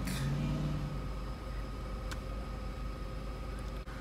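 Car engine idling, a steady low rumble heard from inside the cabin, with one faint tick about two seconds in.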